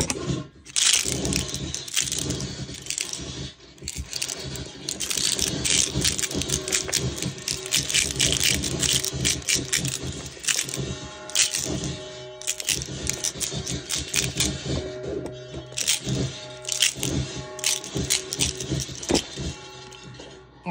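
A rattling shaker box played through a Mantic Hivemind fuzz pedal, a DOD Buzzbox clone, turned into harsh, crackling distorted noise. It starts suddenly as the pedal comes on, and from about halfway short buzzing tones break through the crackle.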